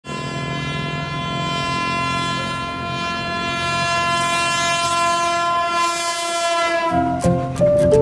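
A commuter electric train's horn sounds one long steady blast that fades out about seven seconds in. Music with short stepped notes starts as the horn dies away.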